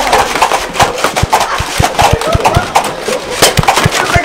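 Irregular rapid clacks and knocks of a Nerf blaster fight: foam balls being fired and hitting the walls and floor of a small room, several impacts a second, with faint voices in the background.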